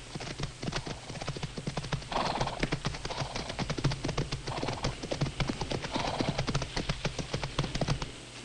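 Two horses galloping, their hoofbeats a fast, continuous clatter, with a few short breathy snorts from the horses over it.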